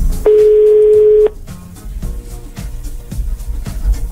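Telephone ringback tone of an outgoing call waiting to be answered: one loud, steady one-second beep near the start, over quieter background music.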